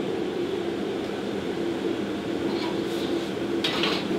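Steady drone of a kitchen ventilation fan, with a short clatter near the end.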